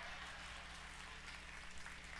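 Small audience applauding faintly, over a steady low electrical hum.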